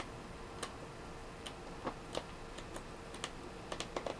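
Quiet, irregular light ticks and clicks of paper pages being turned by hand on a pad, about eight in all and bunching near the end, over a faint steady hum.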